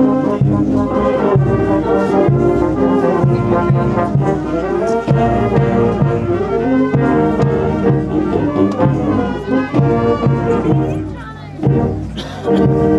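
A brass band playing processional music, with trombones and trumpets carrying the melody. The playing thins and dips briefly near the end.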